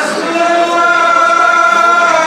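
Many voices chanting together in unison, shifting pitch at the start, then holding long steady notes.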